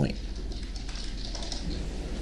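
Faint keyboard typing over a steady low hum of room tone.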